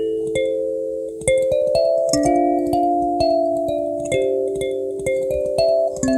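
Handmade purpleheart-wood kalimba played solo, thumbs plucking its metal tines in a slow melody. Each note rings on and overlaps the next, with a soft click at each pluck.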